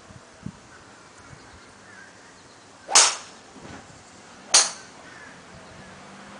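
Two sharp cracks of golf clubs striking balls, about a second and a half apart, the first a little louder.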